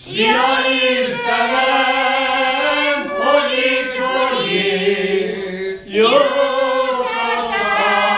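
Group of elderly Hungarian village folk singers singing a folk song together, unaccompanied. The voices come in right at the start after a pause, with a short breath break about six seconds in before the next phrase.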